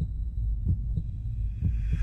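Heartbeat sound effect: a steady run of low thumps like a beating heart, with a faint high hum fading in about halfway through.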